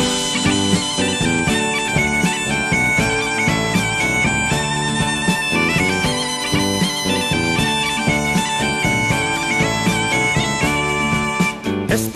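Gaita bagpipe playing a melody over its steady drone, with lower accompaniment underneath: the instrumental lead-in to a song about the gaita.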